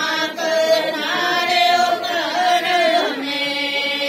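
A group of women singing a Hindu devotional bhajan together in long held notes; the melody drops lower about three seconds in.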